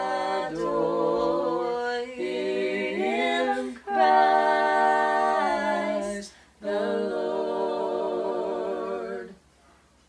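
A small group of voices singing a cappella in harmony, held notes in three phrases with short breaks between them, the singing ending about nine seconds in.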